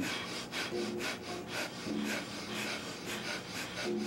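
Several people doing Kundalini breath of fire: rapid, forceful pumping breaths in a steady rhythm of about four to five a second.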